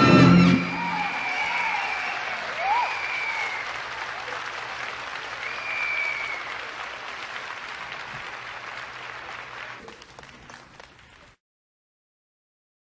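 A live salsa band's closing chord cuts off about half a second in, followed by an audience applauding and cheering. The applause fades steadily and drops to silence near the end.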